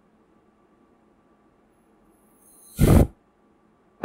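A single short exhale, a rush of air lasting about half a second near three seconds in that swells and then cuts off; the rest is near silence.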